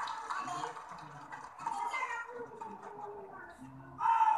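Indistinct raised voices calling out, without clear words, with pitch rising and falling.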